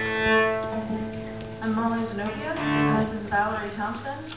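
Cello bowed in a long held note, followed by shorter bowed notes, in a live cello and keyboard performance.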